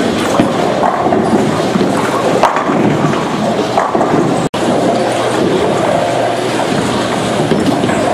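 Steady rumble and clatter of a busy bowling alley: balls rolling down the lanes and pins knocking. The sound drops out for an instant about halfway through.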